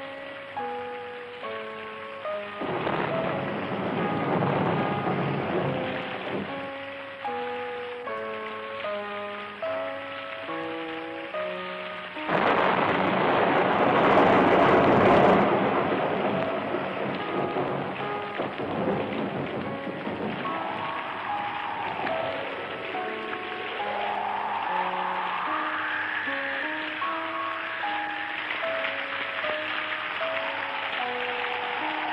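Film thunderstorm sound effect: rain hiss with a swell of thunder about three seconds in and a loud thunderclap about twelve seconds in that lasts some three seconds. Under it runs a background score of short stepping melody notes, and in the last third a gliding tone rises and falls over them.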